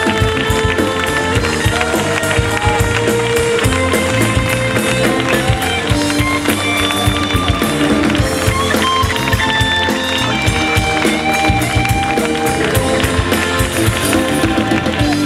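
Live rock band playing loud: electric guitar with held and bending notes over bass and drums.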